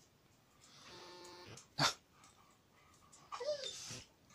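Dog whining: a thin, steady whine for about a second, then a short whine that rises and falls near the end. A single sharp knock comes a little before two seconds in.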